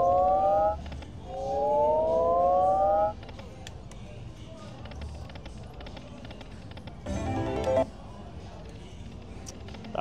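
Slot machine sound effects: a three-note electronic chord rising in pitch plays twice, about two seconds each, while the last reel spins with two gold coin symbols already landed, the machine's build-up for a possible bonus. About seven seconds in comes a short, loud jingle.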